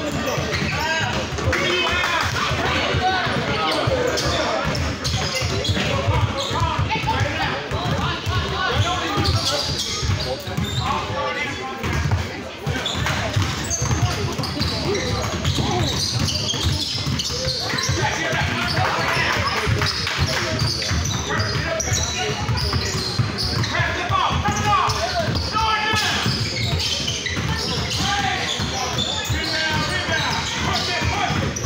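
A basketball being dribbled and bounced on a hard gym court during a game, with a steady mix of players' and spectators' voices and shouts, echoing in the large hall.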